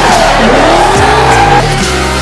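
Drift car sliding: the engine revs and rises in pitch while the tyres squeal, over electronic background music.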